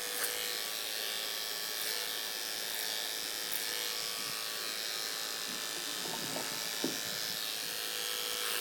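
Electric hair clipper running with a steady hum, cutting hair over a comb at the back of the neck.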